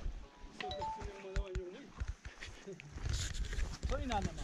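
Wind rumbling on the microphone outdoors, with a short held, slightly wavering pitched sound about a second in, like a distant voice calling.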